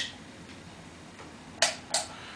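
Quiet garage room tone with the vacuum cleaner not running, its power cut by a tripped circuit breaker. Near the end come two short hissing sounds about a third of a second apart.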